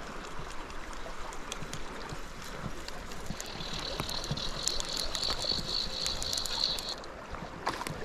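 River current flowing and rippling close to the microphone, with many small clicks and splashes. A steady high whir joins about three seconds in and stops near seven.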